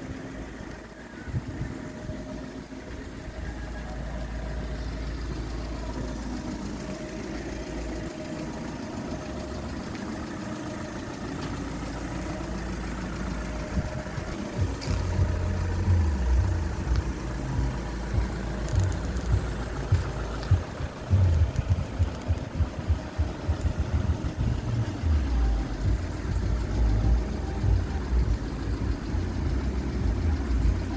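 A VW Tiguan 2.0 TDI four-cylinder diesel engine idling steadily. From about halfway through, irregular low thumps come in over it.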